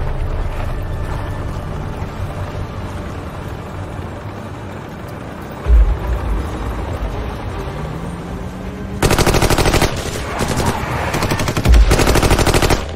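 Bursts of rapid automatic rifle fire break out about nine seconds in, with a second burst opening with a heavy thump near the end. Before that there is a low rumbling bed with one deep thump around six seconds.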